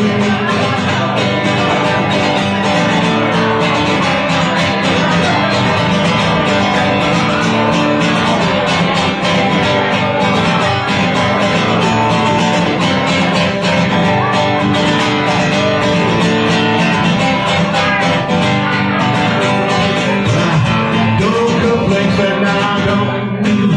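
Solo acoustic guitar strummed steadily through a song.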